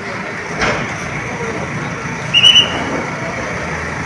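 Backhoe loader's diesel engine running amid crowd chatter, with a knock about half a second in. The loudest sound is a short, high-pitched tone about two and a half seconds in.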